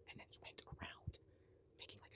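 Faint close-miked mouth noises: quick runs of short wet clicks and breathy sounds from an open mouth, in a cluster over the first second and another near the end.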